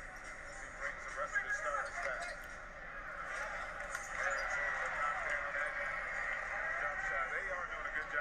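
Faint, thin-sounding basketball game broadcast audio playing back: a commentator's voice over steady arena crowd noise.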